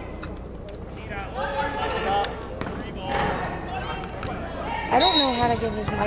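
Basketball game play in a gym: a ball bouncing on the hardwood and voices calling out across the echoing hall. A short, high referee's whistle sounds about five seconds in, stopping play for a foul.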